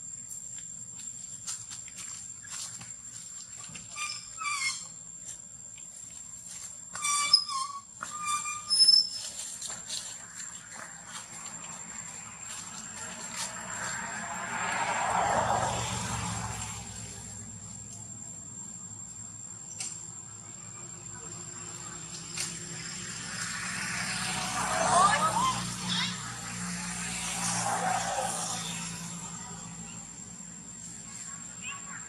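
A newborn macaque gives a few short, high squeaks, around four seconds in and again around eight seconds in. They sit over a steady thin high whine and a low rumble, and two longer swells of noise rise and fall in the middle and near the end.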